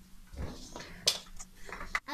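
Small makeup items being handled on a table: a soft knock, then a sharp click about a second in, and a few lighter clicks and rustles, with a faint voice.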